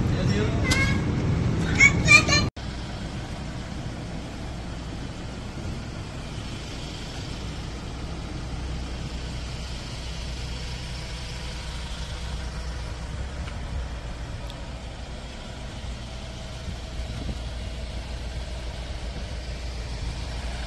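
A few brief words, then after a sudden cut a steady low rumble of street traffic in the open air.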